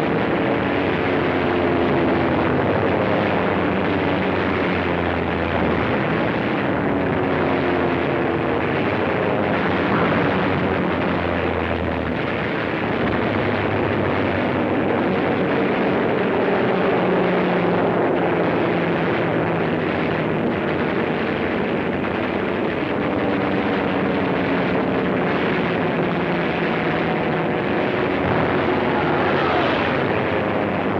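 Propeller fighter planes' piston engines droning, several pitches sliding slowly up and down as the planes dive and pass, heard through an old film soundtrack with no high treble.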